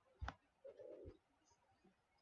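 Near silence: room tone, broken by one sharp click and then a faint low sound about half a second long.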